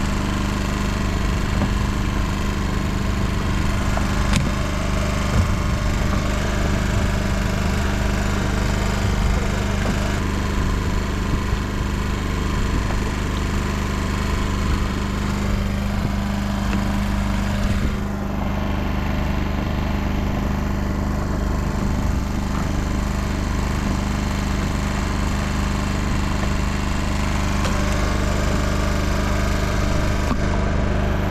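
A fishing boat's engine running steadily at idle, an even mechanical drone with a constant low hum.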